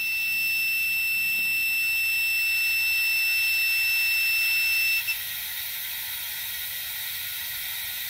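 Multimeter continuity buzzer sounding one steady high tone through a normally closed pressure switch, cutting off suddenly about five seconds in as slowly rising air pressure opens the switch at about 10 PSI. A steady hiss of compressed air runs underneath.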